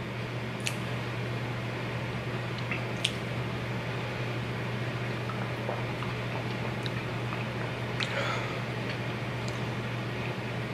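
Drinking a protein shake from a plastic shaker bottle: wet sipping and swallowing sounds with a few short clicks, over a steady low hum.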